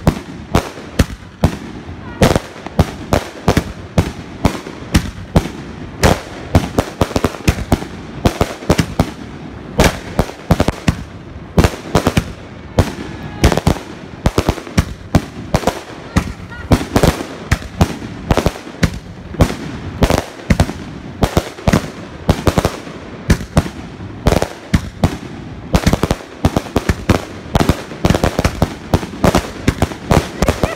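A 49-shot, 2-inch consumer firework cake firing volleys of five shells: a rapid, unbroken string of launch thumps and shell bursts, several a second.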